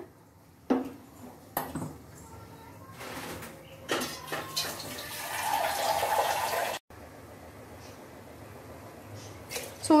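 Liquid being poured and splashing, starting about four seconds in and cutting off abruptly just before seven seconds, after a few light knocks.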